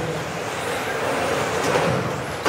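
Radio-controlled model cars racing on an indoor track: a steady whirring of small motors and tyres, with faint whines that rise and fall, echoing in a large hall.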